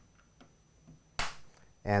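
A single sharp pop a little over a second in, with faint ticks before it: an acrylic printer-frame panel coming loose from its screw as the screw is backed off with a screwdriver.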